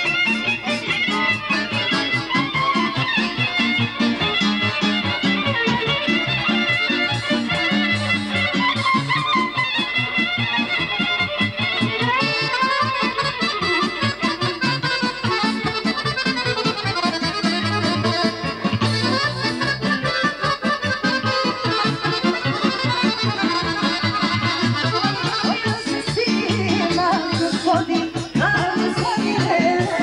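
Live folk band of violin and accordion playing an instrumental dance tune over a steady bass beat.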